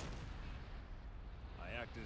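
Low, steady rumble of an explosion in the anime's soundtrack, with a short sharp crack at its start.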